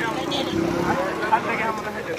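Men's voices talking among the watching group, with one short sharp click about a second and a half in.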